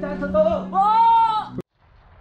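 A kite flute on a flying kite drones a steady low tone under voices. About two-thirds of a second in, a loud, high drawn-out call rises and falls. The sound cuts off suddenly after about a second and a half.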